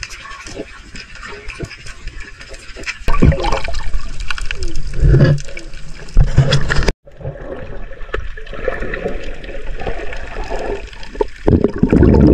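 Water rushing and gurgling against a submerged camera as a diver swims over a shallow reef, with scattered clicks at first. It turns much louder about three seconds in and cuts out for an instant near the middle.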